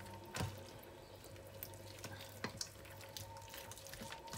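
Faint wet squishing of hands kneading and pressing a moist cooked-rice and garlic mixture into a whole tilapia, with a couple of light clicks.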